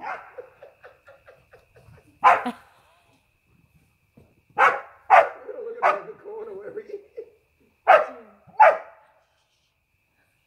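Border collie barking, about six loud single barks spread over several seconds: the first about two seconds in, three close together in the middle, and two more near the end.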